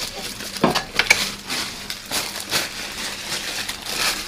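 Rustling and crinkling of things being handled and moved during an office search, broken by several sharp clicks and knocks, the strongest about half a second to a second and a half in.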